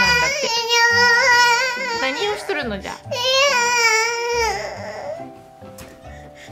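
Two-year-old boy crying in a tantrum, two long high-pitched wailing cries, the second ending about four and a half seconds in and the crying dying down after it. Soft background music runs underneath.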